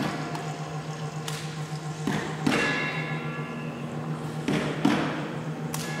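A few irregular knocks and thuds over a steady low hum. One knock, about two and a half seconds in, rings on briefly with a pitched tone.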